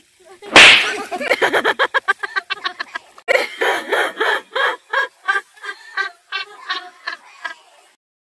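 A loud shriek about half a second in, then hard laughter in rapid pulses, several a second, tailing off toward the end.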